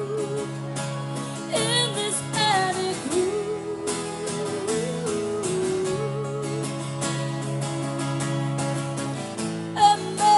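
A live acoustic guitar playing steady sustained chords while a woman sings into a microphone; her voice climbs into a wavering high line a second or two in, then settles back.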